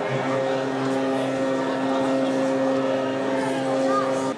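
A steady mechanical drone held at one even pitch, with faint voices underneath.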